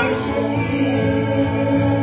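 Live worship band playing: several voices singing together over keyboard and electric guitar.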